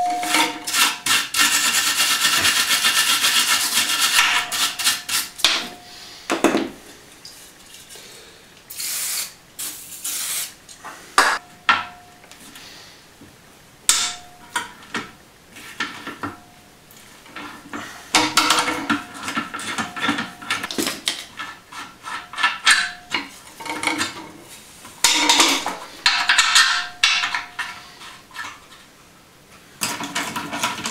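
Hand tools working on a steel rear axle beam while its shock absorbers are unbolted: a spanner and ratchet clicking and clinking against metal, with scrapes and knocks. Brief metallic rings recur throughout. The work is busiest at the start, with further flurries later on.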